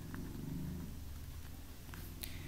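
Ballpoint pen writing on a sheet of paper on a soft surface: faint low rumbling strokes and a couple of light ticks over a steady low hum.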